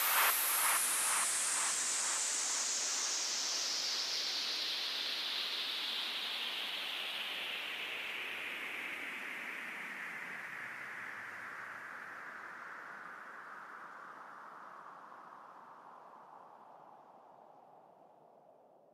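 Closing noise sweep of an electronic guaracha dance track: a hiss that slides steadily down in pitch and fades out to near silence over about eighteen seconds, with faint echoes of the last beats in the first two seconds.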